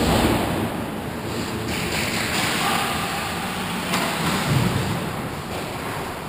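Ice hockey play: skates scraping and carving the ice, with a sharp knock about four seconds in, like a stick or puck striking.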